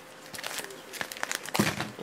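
Shiny wrapper of a trading-card pack crinkling and crackling as hands handle it and begin to open it, with a louder bump near the end.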